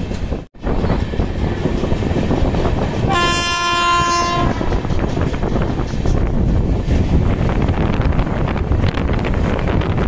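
Indian Railways electric locomotive horn, one steady blast of about a second and a half a few seconds in, over the continuous rumble of an express train rolling past close by.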